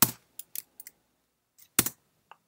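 Computer keyboard keystrokes: a few short, sharp key clicks, the loudest near the end as a key is struck to enter a menu selection.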